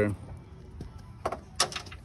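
A pause between spoken sentences: faint outdoor background with two short, sharp clicks close together a little past halfway.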